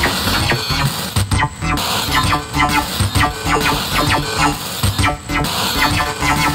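Heavily distorted electronic jam: a circuit-bent Alesis SR-16 drum machine beat with a Dave Smith Instruments Evolver synthesizer sequence, its knobs tweaked live. The pattern drops out briefly about a second in and again near the end.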